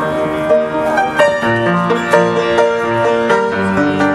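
An upright piano being played by hand: a melody of notes that ring on over one another, with lower bass notes underneath.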